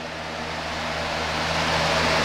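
Box fan running: a steady low hum under a rush of moving air, growing louder.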